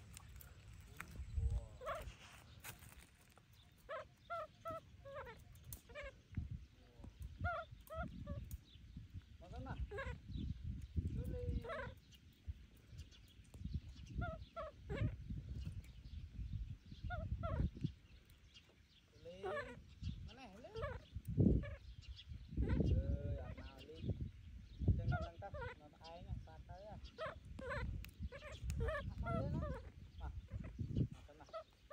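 Baby macaque crying in short, high-pitched whimpering calls, repeated over and over, with a low rumble underneath.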